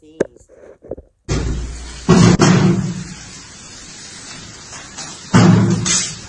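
Heavy thumps of a watermelon being struck by hand, two loud blows about three seconds apart, over a steady background hiss.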